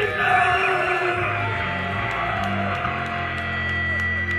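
A death/thrash metal band playing live over a PA: sustained distorted guitar and bass chords, with shouted vocals in the first second or so. About halfway through, a long high guitar note is held over the chords.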